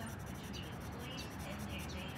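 Felt-tip marker rubbing on paper in short, quick, repeated colouring strokes.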